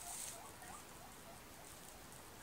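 Pet guinea pigs squeaking faintly in the background: a quick run of short, rising squeaks, several a second, that fades after about a second. They are begging, taking the rustle of plastic wrapping for the sound of vegetables coming.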